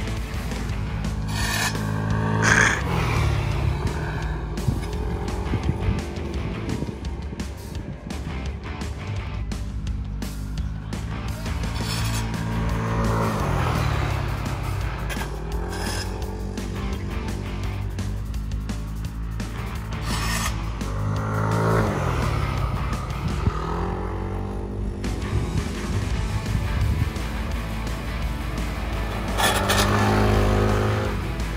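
Yamaha All New Aerox 155 scooters, single-cylinder 155 cc engines, lapping a circuit. Their engine pitch drops and climbs back three or four times as they brake into corners and accelerate out. Background music plays over them.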